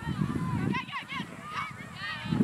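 Birds honking: many short calls overlapping, over a low rumble.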